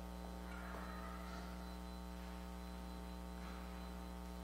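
Steady electrical mains hum on the audio feed: a low, unchanging buzz with a ladder of overtones that covers the room sound.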